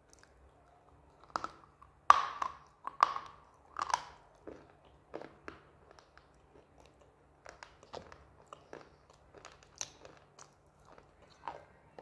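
A person biting into a piece of dipped slate, with four loud, sharp crunches in the first four seconds, then chewing it with quieter crunching to the end.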